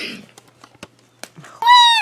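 A few faint clicks and cracks as a hollow chocolate ball is broken open by hand, then, near the end, a loud, high-pitched excited squeal that falls in pitch as it ends.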